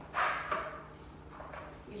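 A short, breathy puff of air, a quick exhale, then a smaller one just after.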